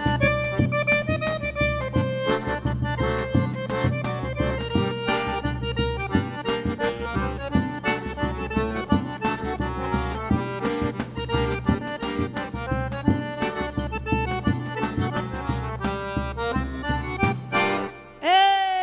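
Forró trio playing an instrumental passage: piano accordion carrying the melody over zabumba bass-drum beats and triangle. The music stops just before the end.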